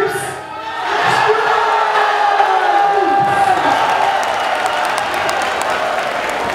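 Crowd cheering and yelling, with long held shouts in the first half, as the judges' vote is revealed. Clapping joins in from about halfway.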